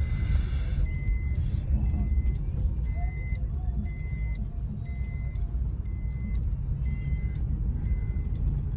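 Car cabin noise while driving: a steady low rumble of engine and tyres on the road, with a faint high beep repeating about once a second.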